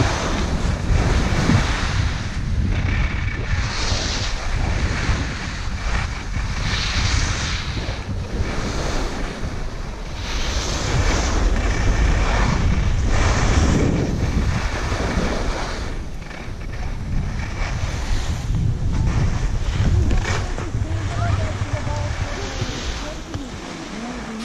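Wind noise rumbling on the microphone of a camera carried down a ski slope at speed, with the hiss of skis carving and scraping on packed snow rising in surges every few seconds.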